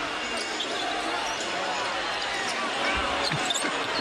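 Basketball arena game sound: a crowd murmuring, a ball being dribbled on the hardwood, and short high squeaks typical of sneakers on the court, with a low thud near the end.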